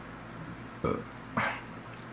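Two short burps from a man with an overfull stomach, the first about a second in and the second about half a second later.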